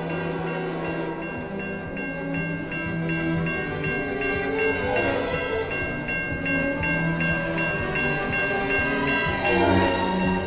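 A railroad crossing warning bell starting about a second and a half in and ringing in an even, rapid rhythm of about three strokes a second, heard over orchestral background music with strings.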